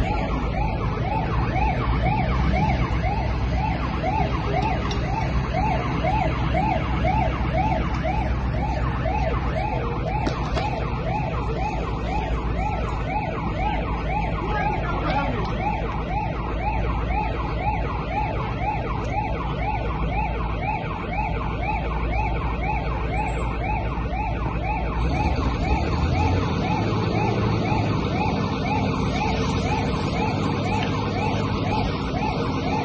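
An emergency vehicle siren on a fast yelp, its pitch sweeping up about three times a second without a break, over a low rumble.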